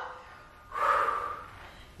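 A woman's single noisy breath about a second in, from the effort of a dumbbell squat, curl and overhead press.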